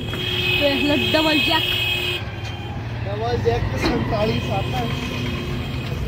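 Vehicle engines running with a low, steady rumble, and voices talking in the background. A steady high tone breaks off about two seconds in and comes back about a second later.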